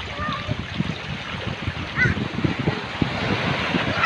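Small waves washing over rocks and sand at the water's edge, a steady rush of surf with wind buffeting the microphone.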